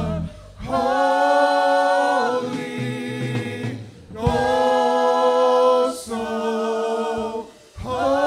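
Church worship singing by a group of voices. The instrumental backing cuts off just after the start, leaving the voices unaccompanied a cappella, in phrases of about two to three seconds with brief breaks between them.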